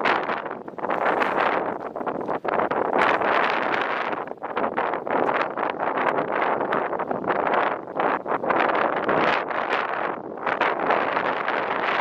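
Wind buffeting the microphone in gusts, a rushing noise that rises and falls every second or so.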